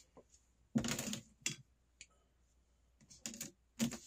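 A few light clicks and taps of hard plastic card holders being handled, in irregular clusters about a second in and again near the end.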